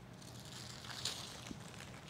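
Faint rustling of a homemade paper kite and its string being handled, with a couple of light ticks.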